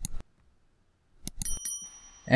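Subscribe-button animation sound effect: clicks near the start, then a bright bell-like ding about a second and a half in, its high tones ringing on briefly.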